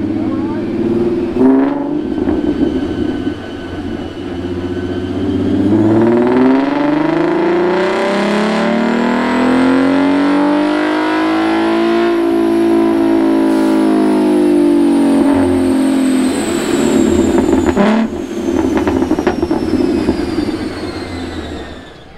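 V6 Ford Mustang making a full-throttle pull on a chassis dynamometer: the engine idles at first, then its note climbs steadily for about eight seconds to a peak, falls away over the next five as it coasts down, and settles back to idle near the end. A thin high whine rises and falls along with the engine.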